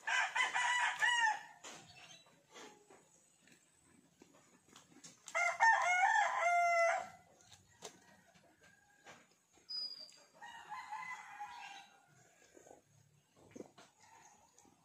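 A rooster crowing three times, each crow lasting about a second and a half to two seconds; the third, about ten seconds in, is fainter.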